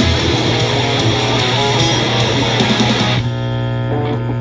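Electric guitar playing a fast skate-punk part over the recorded song with its drums; the song stops about three seconds in, leaving one guitar chord ringing out.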